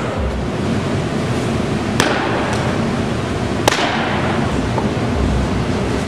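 Steady rushing room noise in a large indoor training facility, broken by two sharp cracks about two seconds and three and a half seconds in, each ringing briefly.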